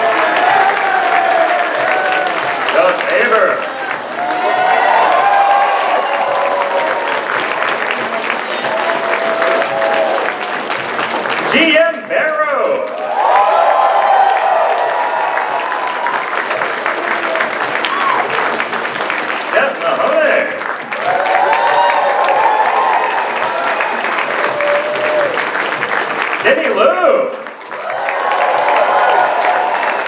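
A large audience applauding steadily through the whole stretch.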